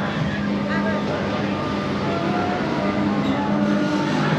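Theme-park crowd ambience: indistinct voices of people nearby over a steady background din, with a few held tones running through it.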